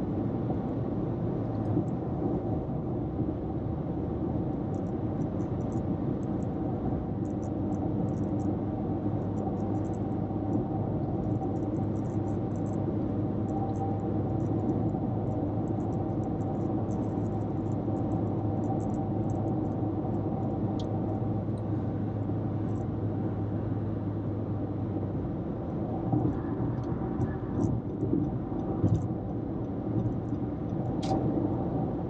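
Car cabin road noise at highway speed: a steady drone of tyres and engine with a low hum that fades out about 25 seconds in. A few light knocks come near the end.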